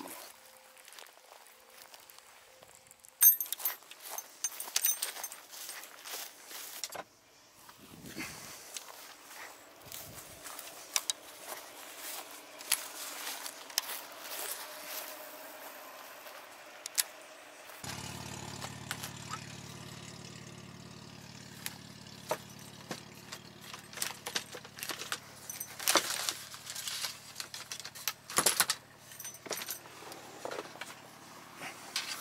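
Scattered clicks, knocks and rattles of handled gear. A little over halfway through, a vehicle engine starts a steady idle and runs under further clattering.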